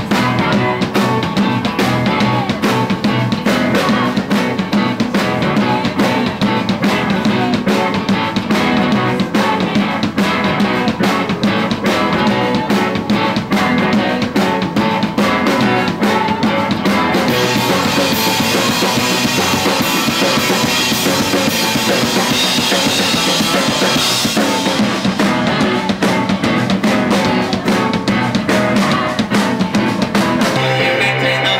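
Indie rock band playing a song live: drum kit keeping a steady beat under guitars and sung vocals. The top end gets brighter and busier for several seconds past the middle.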